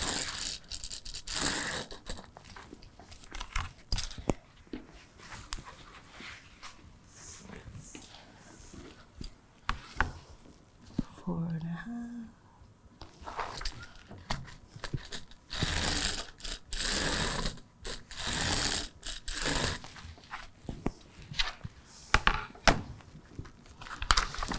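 Handling sounds from marking quilted fabric: a pen drawing lines along an acrylic quilting ruler on fusible-fleece-backed fabric, in scratchy strokes of up to about a second, with light clicks as the ruler is moved on the cutting mat. Paper rustles near the end as the pattern sheet is picked up.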